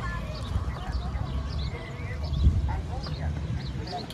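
Outdoor town-square ambience: a distant hubbub of people's voices and scattered short high chirps over a steady low rumble, with a brief louder bump a little past halfway.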